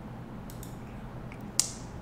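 Computer mouse clicking: a few faint clicks, then one sharp click about one and a half seconds in, over a low steady hum from the room or equipment.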